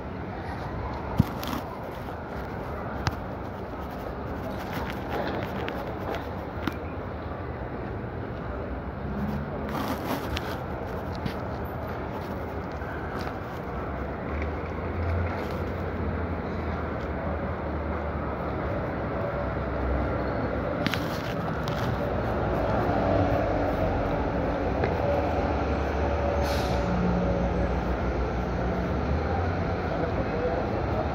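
City street traffic with a vehicle engine running close by, growing louder in the second half. A few sharp clicks in the first several seconds.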